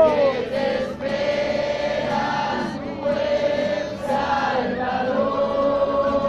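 A congregation singing a worship song together, accompanied by an acoustic guitar; the voices hold long notes.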